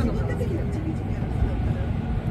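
Steady low rumble of an E353 series electric limited express train running, heard inside the passenger carriage. The last of a PA announcement trails off in the first second.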